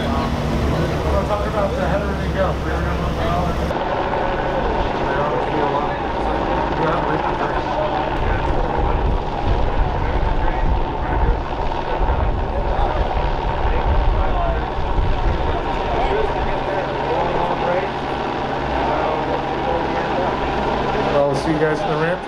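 Helicopter flying overhead with a steady rotor and engine drone, under background voices. For the first few seconds, before the helicopter, a low engine rumble is heard instead.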